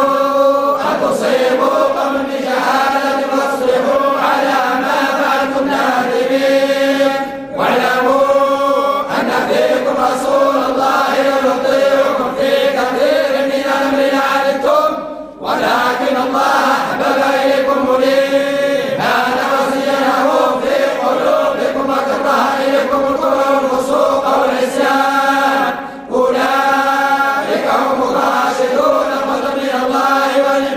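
A group of men's voices reciting the Quran in unison in the Moroccan collective style (tahzzabt), a continuous chant that breaks off briefly three times, about 7, 15 and 26 seconds in.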